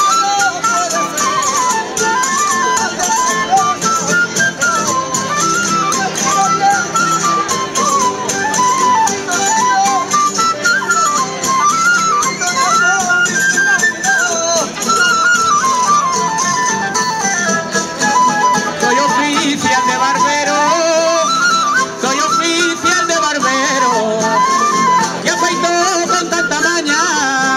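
Traditional cuadrilla string band of guitars, lutes and violins playing an instrumental ronda tune: a repeating melody that rises and falls over a steady strummed accompaniment.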